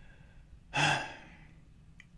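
A man's sigh: a single breathy exhale starting about three-quarters of a second in and fading within half a second.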